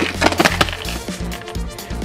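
Plastic tackle boxes and shelf being handled: a quick cluster of knocks and rattles in the first half second or so, then a few lighter knocks, over background music.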